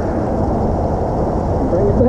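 Wind buffeting the microphone: a loud, steady low rumble, with a man's voice briefly near the end.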